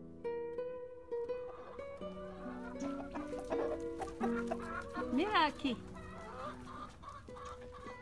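Plucked-string background music, joined about two seconds in by chickens clucking in a coop, with a short rising-and-falling call about five seconds in.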